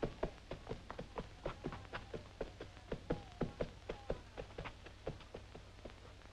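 Ponies' hooves clip-clopping on hard ground as they walk round a pony-ride track: a quick, uneven run of knocks, about three or four a second, dying away near the end.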